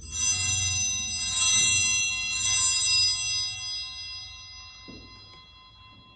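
Altar bells rung in three shakes about a second apart, their ringing fading away over the following seconds: the bells that mark the elevation of the consecrated host at Mass.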